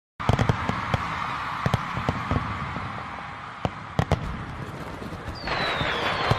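Fireworks going off: irregular sharp bangs and crackles over a steady hiss. Near the end a louder rush sets in with a whistle falling in pitch.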